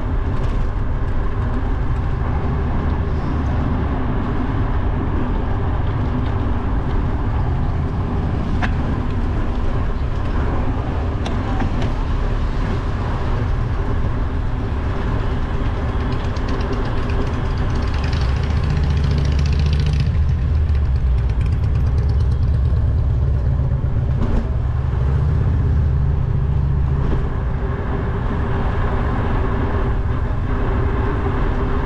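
Wind noise on a bike-mounted GoPro microphone while cycling, a steady low rumble with road and street-traffic noise under it. It gets louder for a few seconds past the middle.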